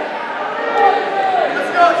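Indistinct chatter of spectators' voices in a gymnasium.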